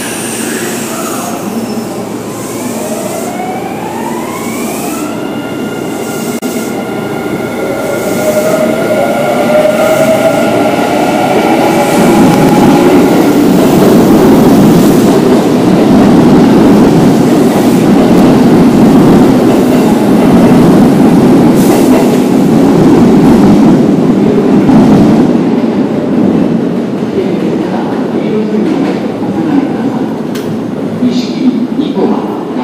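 Kintetsu electric train pulling out of an underground station. Its motor whine climbs in pitch over the first few seconds and then holds steady, then the cars rumble loudly past and fade away near the end.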